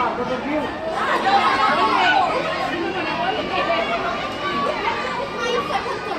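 A crowd of children talking and calling out at once, many voices overlapping in a steady chatter.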